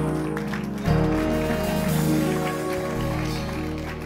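Live band music playing softly: held keyboard chords over a low bass that swells about a second in.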